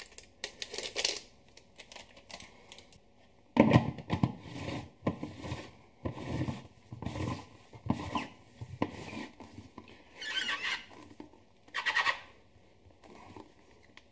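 A foil yeast sachet crinkling as it is emptied, then a plastic fermenter lid being fitted and pressed down onto the bucket rim: a run of knocks, rattles and squeaks of hard plastic.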